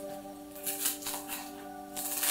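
Small kitchen knife slicing through a head of Napa cabbage onto a cutting board: a quick series of crisp cuts beginning about half a second in. Steady background music plays under it.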